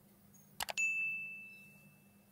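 Two quick clicks, then a single bright bell ding that rings out and fades over about a second: the notification-bell sound effect of a subscribe-button animation.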